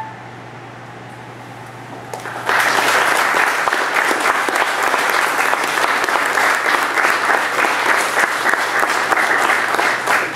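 The last held chord of a flute trio stops right at the start. After about two and a half seconds of hush, a small audience breaks into steady applause.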